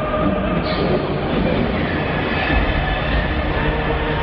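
Hardstyle dance music played loud over an arena sound system and picked up by a handheld camera's microphone, with heavy bass and a held synth line that comes in about a second and a half in.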